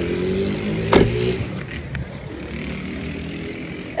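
A passing motor vehicle's engine, its pitch sliding slightly in the first second or so before it fades into a steady street hum. There is one sharp click about a second in.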